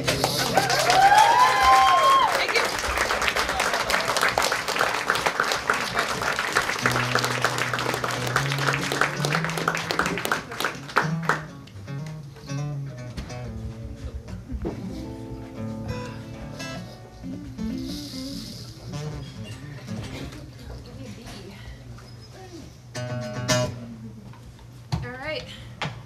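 Audience applauding and cheering, with a few high whoops in the first couple of seconds; the clapping dies away after about eleven seconds into quieter murmuring.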